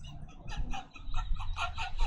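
A person laughing in quick, breathy bursts, several a second, cackling rather than speaking.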